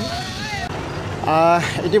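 Speech: voices in a busy open-air market, then a man speaks up loudly about a second and a half in.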